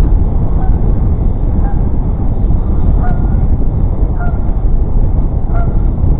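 Geese honking in short calls about once a second, over a loud low rumble of wind and road noise on a moving bicycle's camera microphone.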